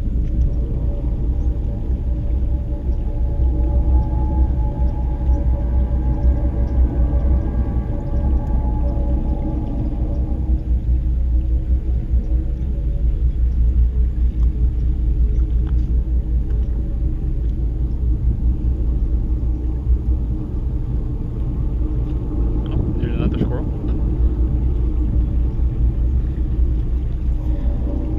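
A steady low rumble, with a faint pitched hum that swells in about three seconds in and fades out after about eleven seconds.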